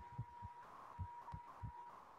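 Faint, irregular low thuds over a steady, faint high-pitched tone, picked up as background noise on a video-call microphone.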